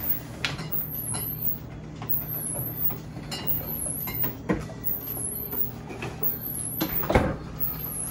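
Rummaging in a refrigerator: a few knocks and clatters of containers being moved, about half a second in, around four and a half seconds and loudest about seven seconds in, over a steady low hum.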